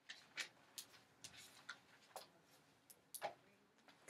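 Sheets of paper being leafed through and shuffled by hand: a string of faint, irregular crackles and rustles.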